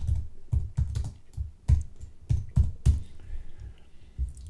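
Typing on a computer keyboard: about ten separate keystrokes at uneven spacing.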